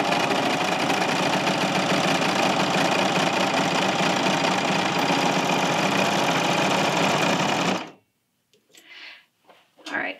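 Bernina serger (overlocker) with an AC motor running steadily at full speed, sewing a knit seam through to its end and chaining off. It stops abruptly about eight seconds in.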